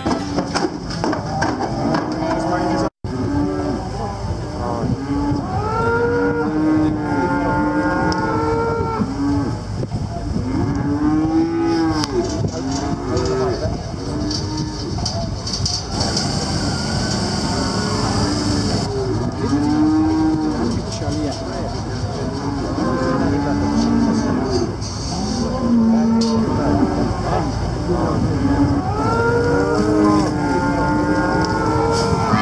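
Many cattle lowing, with overlapping moos from several animals one after another, each call rising and falling in pitch. The sound cuts out for an instant about three seconds in.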